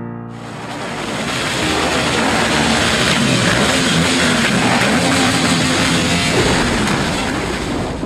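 Several motorcycle engines revving together, loud and continuous. The sound starts suddenly just after the start and cuts off at the end.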